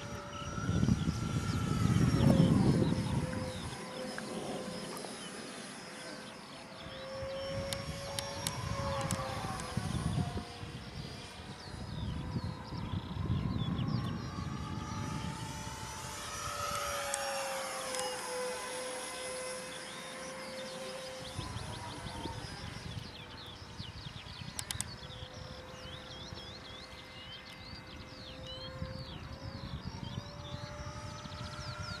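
Electric ducted fan model jet flying at a distance: a steady fan whine that drifts up and down in pitch as it circles. Low rushing swells come and go beneath it, the loudest about two seconds in.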